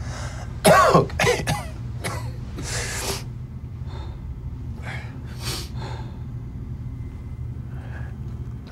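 A man coughing: a loud fit of several coughs about a second in, then a few fainter coughs and breaths, over a steady low hum.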